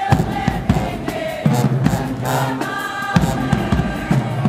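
A high school marching band playing, with brass horns (sousaphones, trombones, trumpets) holding notes over a regular drum beat.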